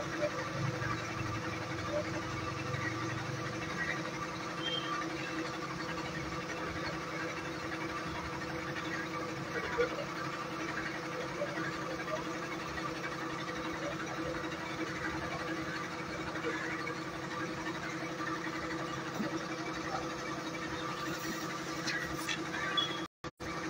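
A machine running steadily with a constant, even hum.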